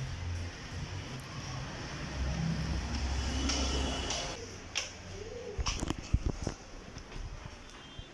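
Low rumble of street noise for the first few seconds, then a handful of sharp knocks about six seconds in from footsteps on a staircase.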